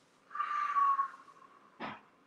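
A deep breath blown out through pursed lips for under a second, with a steady whistling tone running through it. A short sharp click follows near the end.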